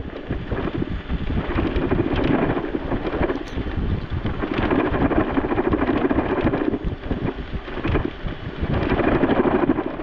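Small e-bike riding over a bumpy gravel road: tyres crunching and frequent quick rattles from the bumps, with wind buffeting the microphone.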